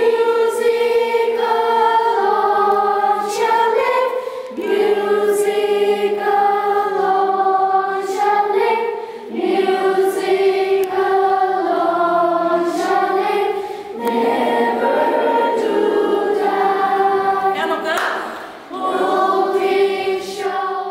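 A choir singing, with several voices holding long notes in phrases and short breaks between the phrases.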